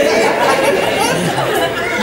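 A man talking into a microphone, with other voices chattering over him.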